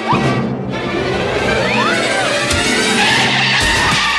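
Cartoon soundtrack: busy, fast music, with a few short rising and falling whistle-like pitch glides, as a character dashes off at speed.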